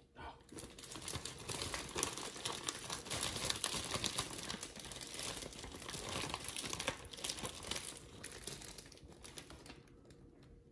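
A thin clear plastic bag crinkling and rustling as it is handled, a dense run of crackles that thins out near the end.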